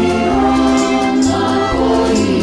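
Youth choir singing a sustained phrase in three-part (SAB) harmony over an accompaniment with a low bass line.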